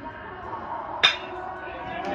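A metal baseball bat hitting a pitched ball about a second in: a single sharp ping, over crowd voices that rise after the hit.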